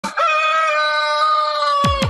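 A rooster crowing: one long, drawn-out crow on a slightly falling pitch. A thudding drum beat comes in just at the end.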